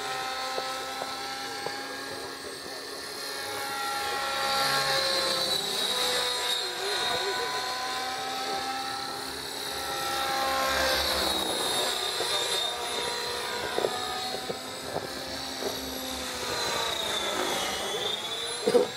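Align T-Rex 600E electric RC helicopter flying: a steady high whine over the rotor's pitched drone, the pitch bending up and down as it manoeuvres and swelling louder twice as it passes closer.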